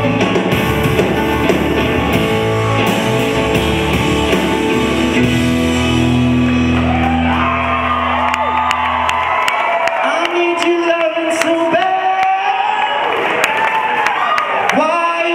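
Live band of acoustic guitar, upright bass and drums playing with a male lead voice singing. About nine and a half seconds in the instruments drop out, leaving voices singing and shouting with whoops and claps from the crowd.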